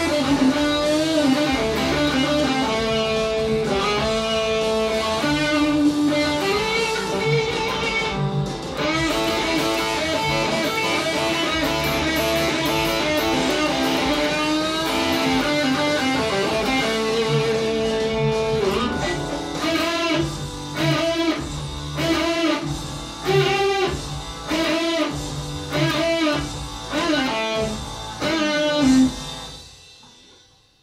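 Distorted electric guitar solo on a Gibson Les Paul, with string bends, vibrato and sustained notes. About two-thirds of the way through, it turns to short repeated bent phrases with brief gaps between them.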